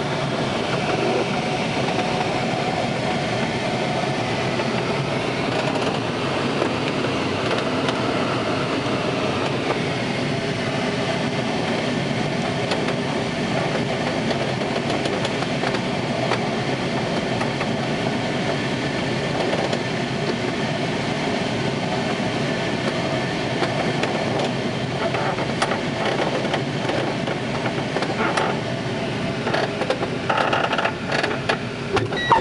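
Steady rush of airflow over a glider's canopy, heard inside the cockpit during final approach. Near the end come a few knocks and uneven rumble as the glider touches down and rolls on the runway.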